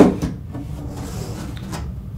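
A hand knocks on and handles a cardboard box. There is one sharp knock at the start and a couple of lighter taps later, over a steady low hum.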